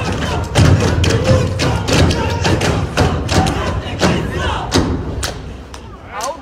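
Step team stomping and clapping on a stage, a rapid irregular run of sharp thuds and claps over loud music with a heavy low beat, with crowd voices mixed in.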